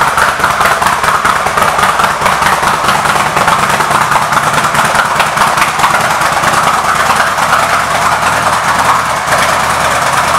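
2014 Indian Chief Classic's Thunder Stroke 111 air-cooled V-twin engine idling steadily.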